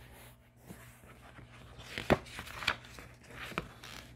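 A page of a paperback picture book being turned: soft paper rustling with a few sharp paper flicks, about two seconds in, again a little later and near the end.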